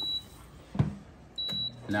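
Power XL multi-cooker beeping: two short, high electronic beeps about a second and a half apart, with a single knock between them. A low steady hum sets in near the end.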